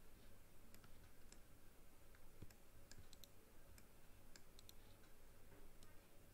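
Faint, irregular clicks of a computer mouse, about a dozen, scattered through a near-silent room.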